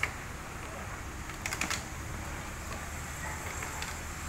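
A few light clicks and taps of hard plastic as hands work inside the white plastic planter fittings and pull the black irrigation tubing through them, over a steady low hum. A small cluster of clicks comes about a second and a half in.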